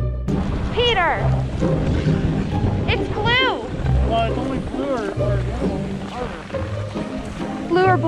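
Skis scraping and sliding over hard, crunchy packed snow, with wind rushing on the microphone.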